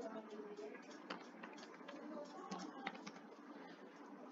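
Faint computer keyboard typing: a string of light, irregular key clicks.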